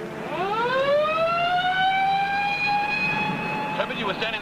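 Mechanical vehicle siren winding up: one long wail that climbs steeply in pitch, then levels off and holds a steady tone almost to the end.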